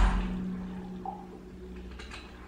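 Soundtrack of a TV western: the echoing tail of a loud bang fading away over about a second, under a low held tone that cuts off at the end.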